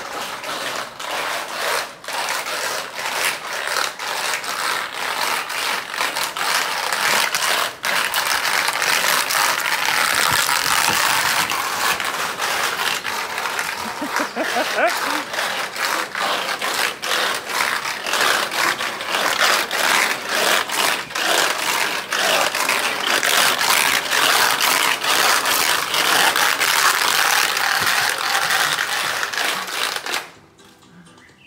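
A chimpanzee running about with a bottle, making a continuous loud clattering and rattling with many sharp knocks.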